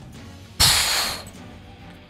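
Explosion sound effect: one sudden loud blast about half a second in, dying away over about half a second, over quiet background music.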